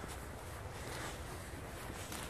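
Steady low wind rumble on the microphone of a handheld camera being carried outdoors, with no distinct footsteps or other events.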